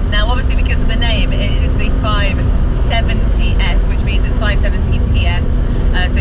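McLaren 570S Spider's twin-turbo V8 running on the road with the roof off, a steady engine tone under heavy wind and road noise. The tone drops away about halfway through. Excited voices and laughter sound over it.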